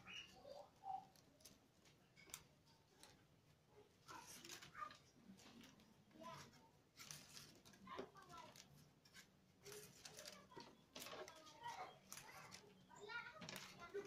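Faint clicks and rustling of a wicker binding strand being wrapped and pulled tight around a rattan basket handle.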